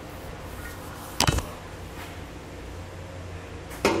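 A single sharp metal clank about a second in, as a steel underbed gooseneck hitch center section is lifted up against the truck's frame and crossmember beams, over a low steady hum.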